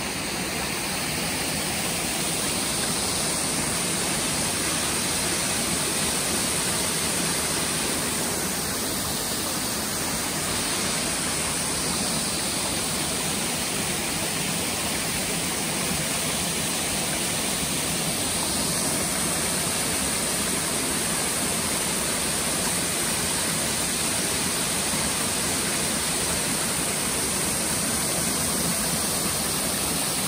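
Waterfall and rocky creek: a steady rush of falling and flowing water.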